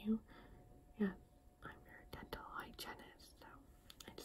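A woman whispering softly close to the microphone, with a briefly voiced word at the start and another about a second in.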